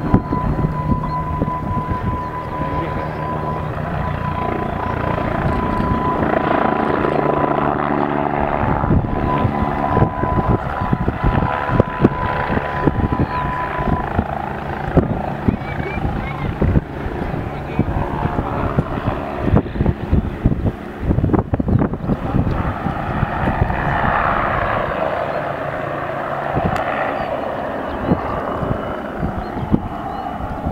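Bo 105 twin-turbine helicopter flying aerobatic manoeuvres overhead, its rotor and engines heard steadily with gusty, knocking buffeting on the microphone. Voices in the crowd are mixed in, and a steady high tone runs through the first half.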